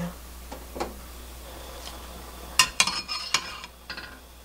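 Anchovy broth simmering quietly in a glass pot, then, past halfway, a quick run of sharp clinks as a metal skimmer knocks against the glass pot while scooping the boiled anchovies out.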